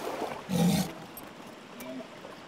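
A walrus snorting once, a short loud exhalation about half a second in.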